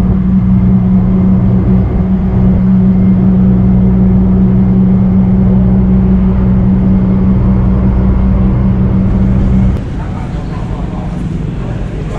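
Loud, steady drone of a bus engine and road noise heard inside the bus cabin, with a constant low hum. About ten seconds in it cuts off to a quieter, busier background.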